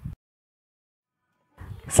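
Near silence: the sound track drops to dead silence for over a second, and faint room noise comes back shortly before the narration resumes.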